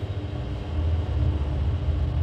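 A steady low rumble with a faint hum above it.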